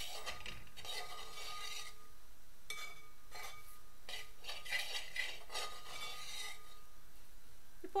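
Steel spoon scraping and stirring a dry, spice-coated mixture around a stainless steel pan, in a series of scraping strokes each about a second long, pausing near the end.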